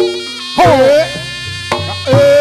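Reog Ponorogo gamelan music: a buzzy, wavering slompret (double-reed shawm) melody over sharp percussion strokes, one at the start and one near the end.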